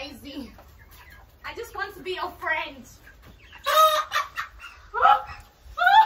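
White broiler chicken squawking in alarm as it is caught and held, a series of harsh calls with the loudest about four seconds in.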